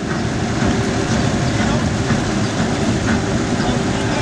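Steady rushing noise with an uneven low rumble, typical of wind buffeting the microphone on a small boat moving across the water.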